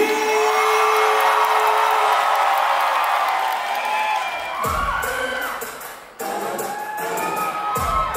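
A crowd cheering and shouting loudly. About halfway through, a music track comes in with a deep bass hit, drops out briefly near the six-second mark, and then returns as dance music.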